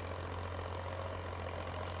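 A steady low hum under faint background noise, even throughout, with no distinct events.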